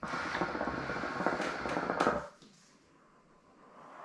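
Hookah water bubbling with a dense run of small pops as a long drag is drawn through the hose, stopping after about two seconds. Near the end, a soft breathy exhale of smoke.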